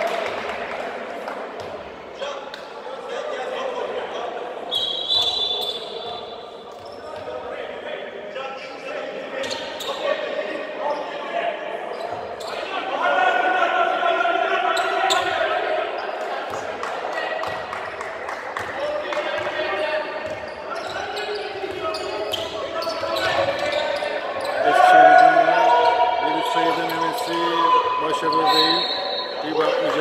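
Indoor basketball game sound in a reverberant sports hall: a basketball bouncing on the hardwood court, with voices of players and the bench calling out. Two brief high-pitched squeaks, about five seconds in and near the end.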